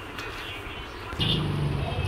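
A motor vehicle engine running with a steady low drone, setting in about a second in after a quiet background.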